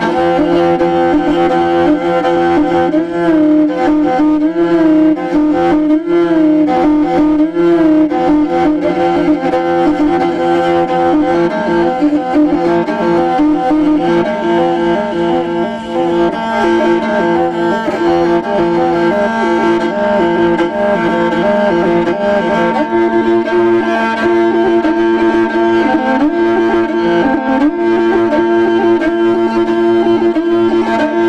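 Morin khuur (Mongolian horsehead fiddle) played solo with the bow. Two strings sound together, a held drone under a melody that wavers and trills, with a few pitch slides dipping and rising near the end.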